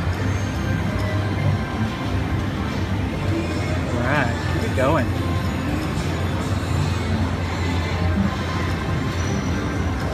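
Slot machine's win music playing steadily as the bonus win meter counts up, over the chatter and hum of a casino floor.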